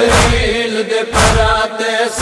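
Noha recitation: male voices hold a long, wavering chanted note, and a new sung line starts near the end. Under the voices runs a steady beat of deep thuds about once a second.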